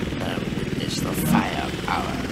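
Breakdown in an electronic drum-and-bass track: the drum beat has dropped out, leaving a low rumbling drone under short, chopped voice samples.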